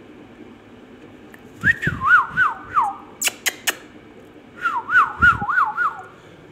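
A warbling whistle in two bursts, each wavering up and down about three times a second, with three sharp clicks between them.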